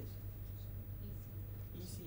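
A quiet room with a steady low electrical hum and a faint brief scratchy sound near the end.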